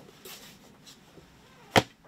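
A hardcover book being handled and put down, with faint rustles and then one sharp thud near the end as it lands on the stack of books.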